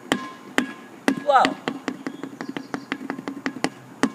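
Rubber playground ball dribbled one-handed on an asphalt court, each bounce a sharp slap. The bounces come about two a second, then quicken to about five a second and get softer as the dribble is brought low.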